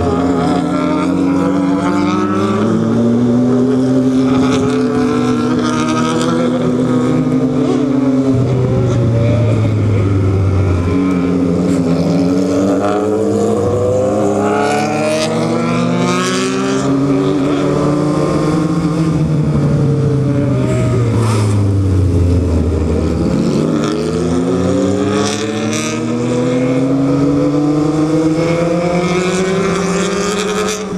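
Motorcycle engine under the rider, accelerating with its pitch climbing and dropping back at each gear change, then winding down for several seconds in the second half before pulling up through the gears again, with wind rush on the microphone.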